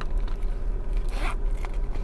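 Rasping and rustling of a clear plastic zippered pouch being handled, with a louder rasp a little past a second in.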